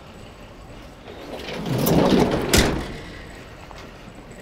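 Cargo door of a small box delivery truck sliding along with a rattle, then shutting with a sharp bang about two and a half seconds in.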